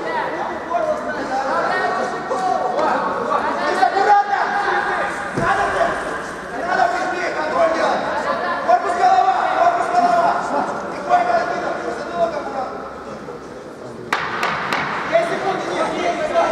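Several people shouting and talking over one another in a large, echoing hall, with a few sharp clicks near the end.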